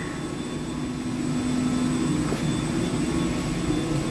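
Steady drone of chiller-plant machinery with a low hum tone running through it, growing slightly louder about a second in.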